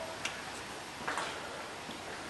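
Faint steady hiss of background noise with three soft clicks, spaced about a second apart.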